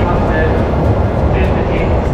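Loud, steady low noise of a Shinkansen bullet train at a station platform, with voices mixed in.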